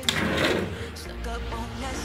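Kitchen drawer being pulled open: a click at the start, then a short sliding rumble.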